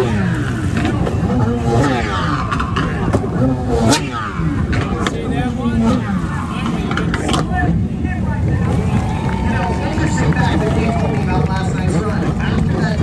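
Stand-up jet ski engine revving up and down over and over, in rising and falling surges, as the rider throws flips and spins on the water. Voices are heard in the background.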